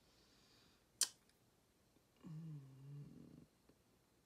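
A single sharp click about a second in, then a woman's short, low, closed-mouth "hmm" hum while she decides on the next eyeshadow colour.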